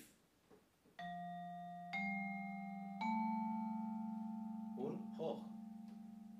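Vibraphone playing low notes from the bottom of its range: three notes struck one after another about a second apart, each ringing on under the next with a fast, even wavering.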